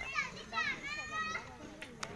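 Children's high-pitched voices shouting and calling out, their pitch swooping up and down, with a short click at the very end.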